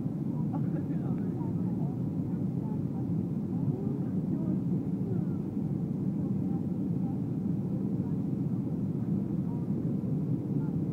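Steady cabin drone of a Boeing 737 airliner in descent, engine and airflow noise heard from a window seat. Faint passenger voices sit under it.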